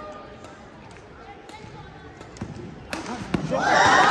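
Badminton rally with a few sharp racket strikes on the shuttlecock over a faint murmur of spectators. About three and a half seconds in, the crowd breaks into loud shouting and cheering.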